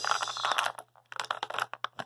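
Plastic toy packaging crackling and crinkling as an action figure is worked out of it, in two spells of handling with a brief pause just before a second in.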